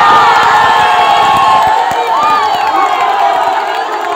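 Large football crowd cheering and shouting at a goal, many voices at once, loudest in the first second and easing slightly toward the end.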